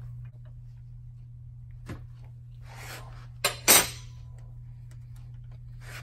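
Metal clinking and knocking as a motorcycle shock absorber is handled and set into a steel bench vise, with two sharp clinks about three and a half seconds in, over a steady low hum.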